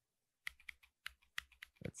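Computer keyboard keystrokes: a quick series of faint key clicks, about six or seven in a second and a half, starting about half a second in, as the keys are pressed to scroll.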